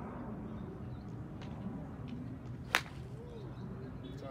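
A golf club striking a ball on a full swing: a single sharp, very short crack about three quarters of the way in, over a steady low background.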